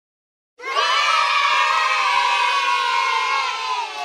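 A group of children cheering and shouting together. It starts about half a second in, holds steady, then slides down in pitch and trails off near the end.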